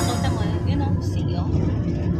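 Steady low rumble of a bus's engine and tyres heard inside the passenger cabin, with indistinct voices over it.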